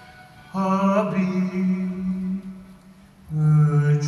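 Duduk playing a slow melody of long held low notes: one note starts about half a second in and bends slightly, then a lower note begins near the end.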